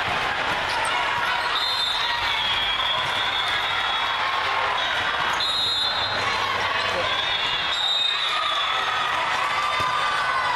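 Indoor volleyball game sound in a large hall: a steady hubbub of spectators' and players' voices, with short high squeaks from athletic shoes on the hardwood court coming again and again.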